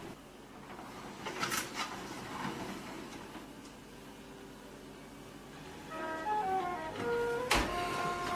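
A disposable foil pan set onto a metal oven rack, with a couple of light clicks about a second and a half in, then the oven door shut with one sharp clack near the end, under background music that starts partway through.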